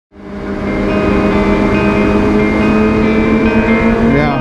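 Music over the steady running of a sport bike's inline-four engine at constant cruising revs, fading in from silence in the first half second.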